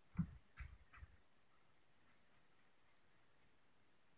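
Three soft knocks in the first second, then near silence: room tone.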